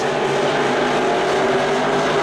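IMCA Modified dirt-track race cars' V8 engines running at speed as a pack down the straightaway, a loud, steady engine note with no break.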